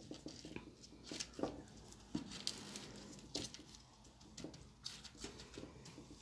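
Faint, scattered clicks and light rustles of gloved fingers handling gravel and a small rock on gritty potting mix in a pot.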